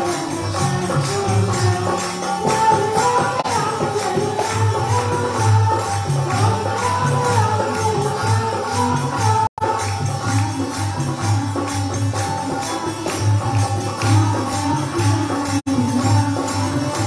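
Harmonium played in a melody over steady held reed tones, with jingling hand percussion keeping a rhythm in a devotional bhajan. The sound cuts out for an instant twice, once about halfway through and once near the end.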